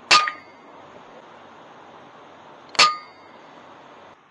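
FX Impact M3 .22 air rifle, a pre-charged pneumatic, fired twice about three seconds apart. Each shot is a sharp crack followed by a brief metallic ring, over a steady faint hiss.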